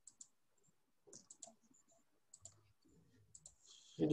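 Near silence broken by a few faint, scattered clicks: two near the start, a cluster a little after one second, a pair halfway through, and a few more near the end.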